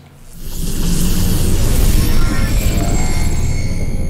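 Intro logo sting: music with a heavy deep low end and a hissing high wash, swelling up about half a second in and holding loud.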